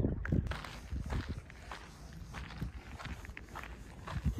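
Footsteps on a rocky, gravelly hiking trail, a series of uneven steps.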